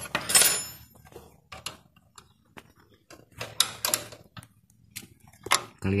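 Metal parts and hand tools clinking and clicking against an embroidery machine head: a loud metallic clatter with a brief ring under a second in, then scattered sharp clicks, several in quick succession in the middle.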